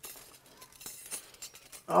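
A few faint, short clinks of kitchen utensils and dishes.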